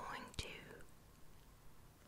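A soft whisper trailing off with a sharp mouth click, then faint quiet.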